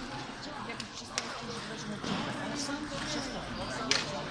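Echoing sports-hall murmur of indistinct voices, with a few sharp clicks of table tennis balls striking bats and tables, the loudest near the end.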